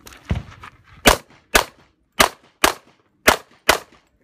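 Six pistol shots fired in three quick pairs, the two shots of each pair under half a second apart, with a slightly longer gap between pairs.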